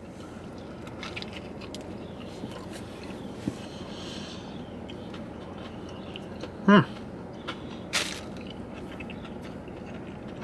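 A person biting into and chewing a mouthful of cheeseburger, over a steady low background noise, with a short hum of the voice about two-thirds of the way through and a sharp click soon after.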